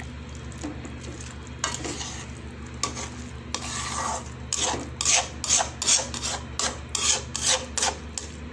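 A silicone spatula scrapes and stirs soaked mung dal frying in oil and spice paste in a metal pan, over a steady low hum. The strokes grow louder and come at about two a second in the second half.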